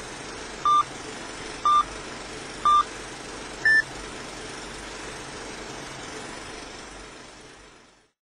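Film-leader countdown beeps: three identical short beeps a second apart, then a fourth, higher beep, all over a steady hiss that fades out near the end.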